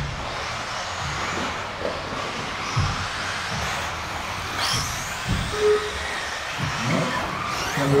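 Electric 1/10 4wd RC race buggies running on a carpet track: a high motor whine rises as one passes close about halfway through, over the general noise of the pack. Two low thumps come near the middle.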